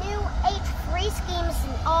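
A child's voice speaking, mostly words the recogniser did not catch, over a steady low rumble.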